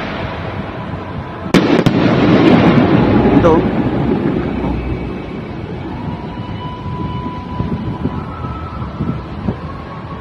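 Aerial fireworks: two sharp bangs close together about one and a half seconds in, followed by a loud rumbling crackle that fades over the next couple of seconds.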